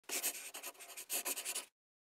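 Quick, dry scratching strokes in two bursts, a sound effect over the opening logo, cutting off about a second and a half in.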